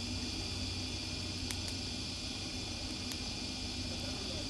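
Open wood fire burning under a large cooking pot: a steady hiss with a few faint crackles about a second and a half in and again near three seconds.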